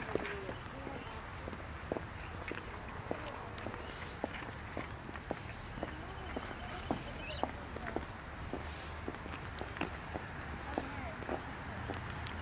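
Footsteps on an asphalt path, a steady walking pace of about two steps a second, with faint curving pitched calls or voice-like sounds in the background.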